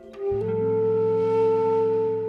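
Bamboo transverse flute playing a short note that steps up, about a third of a second in, into one long held note, over a low steady bass note from the accompaniment.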